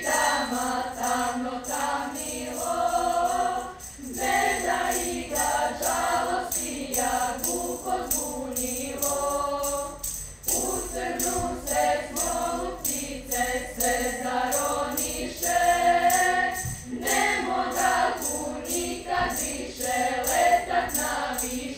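Girls' church choir singing together, in phrases broken by short pauses about 4, 10 and 17 seconds in.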